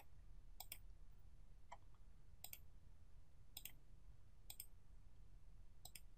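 Faint computer mouse-button clicks, about six of them roughly a second apart, some in quick double clicks, over near silence.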